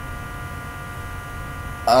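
Steady electrical hum in the recording, with several thin high tones over a low rumbling noise. Near the end a man says a drawn-out "um".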